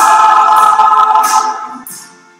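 Mixed choir singing one long held chord on the words "They're living!", over a small band, fading away near the end.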